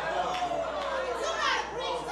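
Voices from the congregation calling out and chattering, several people at once, softer than the preacher's voice.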